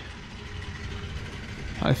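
Steady low background noise of a room, with no distinct event, before a man's voice starts near the end.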